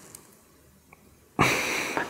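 A man's loud, exasperated sigh, a forceful breath out that starts suddenly about one and a half seconds in, after a pause that is nearly quiet.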